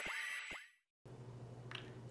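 The tail of a logo intro sting: a few bright chime-like tones ring out with quick falling pitch sweeps and die away within about half a second. Then comes a brief dead silence, followed by a faint low hum of room tone.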